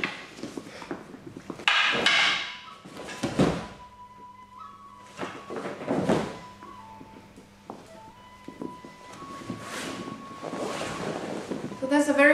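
Movement noise of a kenjutsu sequence with wooden practice swords: about five separate thuds and swishes from stepping, dropping to one knee on the mat and cutting. A faint steady tone runs underneath and steps in pitch a few times.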